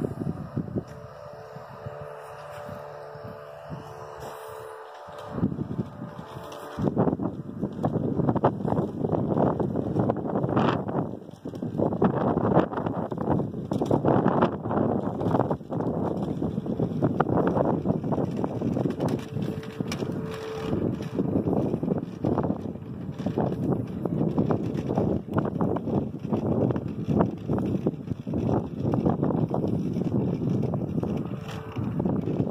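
Wind buffeting a phone's microphone outdoors: a dense, uneven rumble that comes in gusts and starts loudly about seven seconds in. Before it there is a quieter stretch with a faint steady hum.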